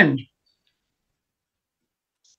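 The end of a man's sentence, cut off about a quarter second in, then complete silence with no room sound at all.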